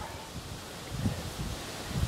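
Wind buffeting the microphone: a low, uneven rumble with a faint outdoor hiss, a little stronger about a second in.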